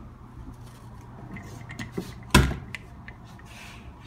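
A sticking door being pulled open: a few small clicks and rubbing, then one loud clack about two and a half seconds in as it gives.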